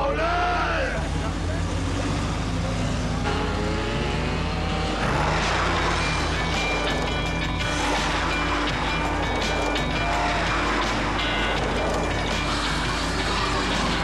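A mixed montage soundtrack: music over car engine noise, with people shouting now and then.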